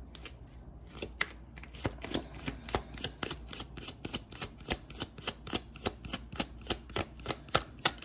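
A tarot deck being shuffled by hand: a quick, uneven run of short card clicks and slaps, several a second.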